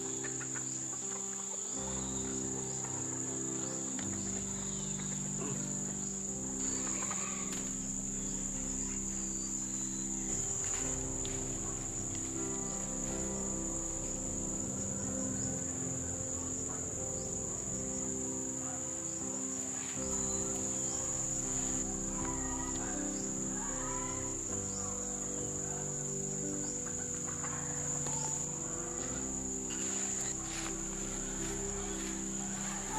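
Insects chirring in one unbroken high-pitched drone, over soft background music with slowly changing low notes.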